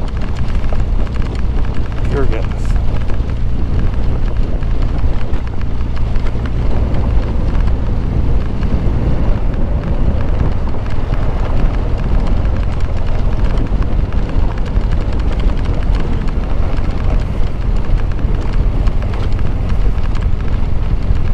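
BMW R1200GS boxer-twin engine running steadily under way on a dirt road, with wind noise on the microphone.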